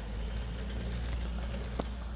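Outdoor background with a steady low rumble and faint hiss, and no distinct sound.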